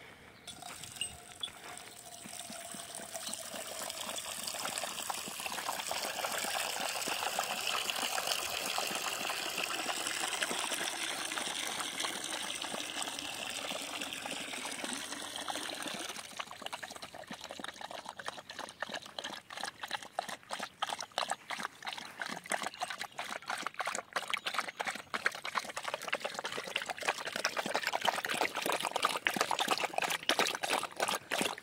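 Water poured steadily from a plastic jug into a metal dog bowl. About halfway through, a dog starts lapping from the bowl, with quick repeated wet laps.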